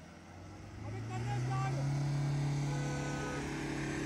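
SUV engines revving up about a second in and held steady under heavy load, straining against a tow rope in a tug of war, with faint voices.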